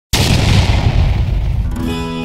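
A boom sound effect that hits suddenly and rumbles away over about a second and a half, followed near the end by music, with guitar, coming in.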